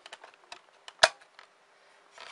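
CD being fitted onto the spindle hub of an open disc-drive tray: several light plastic clicks and ticks, with one sharp click about a second in.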